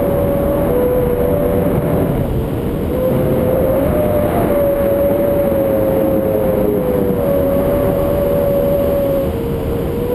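Wind rushing over an action camera during tandem paraglider flight, a loud steady roar with a whistling tone that wavers slightly in pitch.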